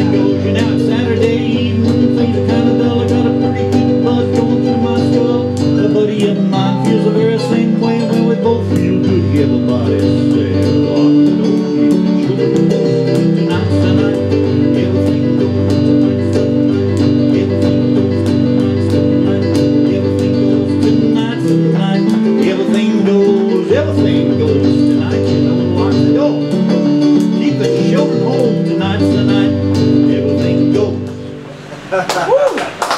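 Electronic keyboard playing an instrumental passage of a country-style song, chords over a pulsing bass line with a steady, even beat keeping time.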